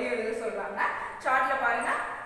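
A woman speaking, her voice coming in two stretches with a short break about a second in; the recogniser wrote down no words.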